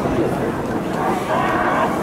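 Voices at the ground, with a long drawn-out shout rising and falling in the second half.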